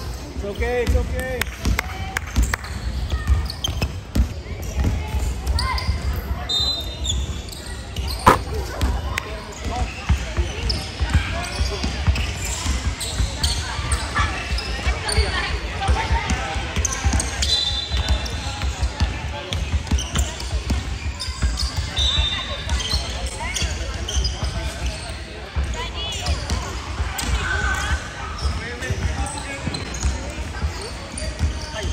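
Basketball bouncing on a hardwood gym floor during play, with many short knocks scattered through the whole stretch. Voices of players and spectators carry under it in the echo of a large hall.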